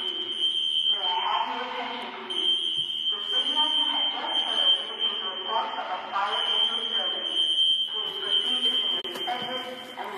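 High-pitched electronic alarm buzzer sounding as one steady tone, dropping out for a second or so a few times, over people's voices.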